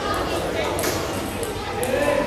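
Table tennis ball strikes, a couple of sharp clicks about a second apart, over background chatter of children and adults in a large hall.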